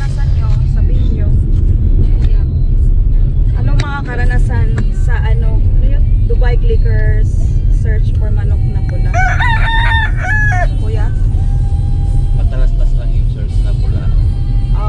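Steady low road and engine rumble inside a moving car, with voices talking over it and a long, drawn-out high call about nine seconds in.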